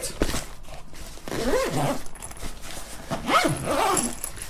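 A soft fabric carry case handled as a folded solar panel goes into it, with brief rustles and knocks right at the start. Two short wordless vocal sounds from a man come about a second in and near the end.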